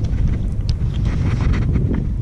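Wind buffeting the camera microphone: a steady low rumble, with a few faint small clicks over it.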